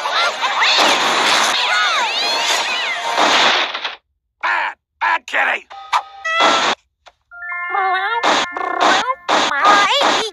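Chopped-up cartoon soundtrack: about four seconds of dense, chaotic noise with shrieking rising and falling glides cut off suddenly, then short clipped snippets of voice, music and sound effects stuttering between brief silences, with a held steady tone near the end.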